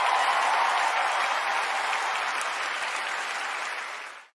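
A large theatre audience applauding and cheering, a dense steady wash of clapping that eases off slightly near the end.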